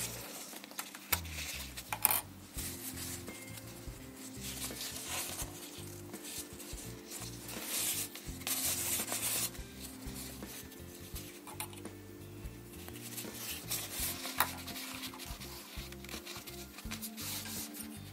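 Fabric rustling and rubbing as a sewn strip is turned right side out by hand, in scattered short bursts with a few sharp clicks.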